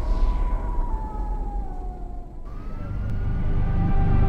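Horror-trailer sound design: a deep rumbling drone with a thin tone that slowly falls in pitch. About two and a half seconds in it changes abruptly to a slowly rising tone over heavier rumble.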